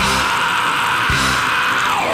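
Garage metal band playing: a long held yelled vocal note over distorted guitar, bass and drums.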